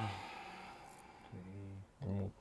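Mostly quiet room, with a faint click about a second in and a short, low murmured voice in the second half.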